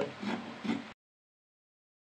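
The tail of a woman's speech, then the audio cuts off abruptly to dead silence about a second in.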